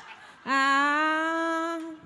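A single voice holding one long, steady note for about a second and a half, starting about half a second in.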